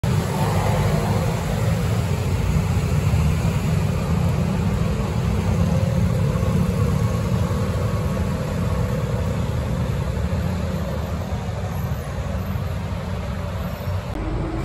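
Steady city road traffic from cars and motorcycles on a busy junction, a continuous low rumble with a hiss over it.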